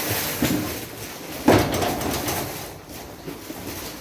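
A hard-shell suitcase being wheeled and handled on a hard floor: rolling wheels and clatter, with one loud knock about a second and a half in.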